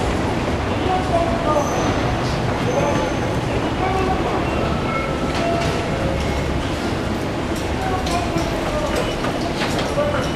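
Busy train-station ambience heard from a moving escalator: a steady low rumble with overlapping voices and a few short pitched tones over it.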